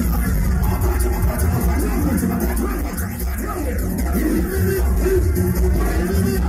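Loud live electronic dance music over a concert PA, with heavy, steady bass and a vocal line on a microphone over the beat.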